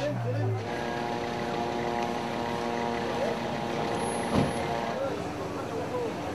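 A vehicle horn held down in one steady tone for about four seconds, over a crowd's voices, with a single sharp knock near the end of the tone.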